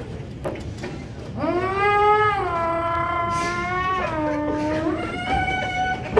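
A performer's voice holding one long, high note, with no words, stepping down in pitch about four seconds in and back up near the end.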